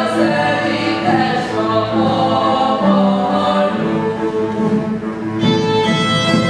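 Ukrainian folk song: a group of voices singing together over bowed-string accompaniment. About five seconds in, the singing gives way to a fiddle line.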